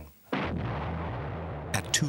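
A deep, heavy rumble that starts suddenly about a third of a second in and holds steady, with a sharper crackle near the end.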